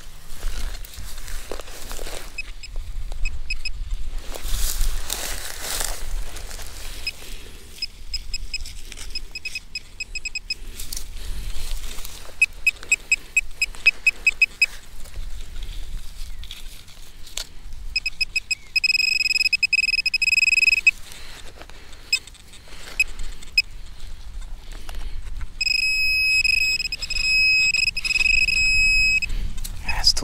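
Handheld metal-detecting pinpointer probed into a dug hole, beeping at a high fixed pitch: quick pulses, then a steady tone for about two seconds, then quick pulses again near the end, as it closes on the buried target. Between the beeps, soil is scraped and knocked by hand.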